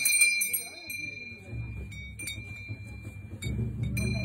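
Small brass hand bell rung in worship, in short bursts: ringing at the start and fading, then again about two seconds in and near the end. A low droning sound comes in partway through and grows louder near the end.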